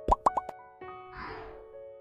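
Cartoon pop sound effects over soft background music. Three quick rising bloops with sharp clicks come near the start, and a short falling whoosh follows about a second in.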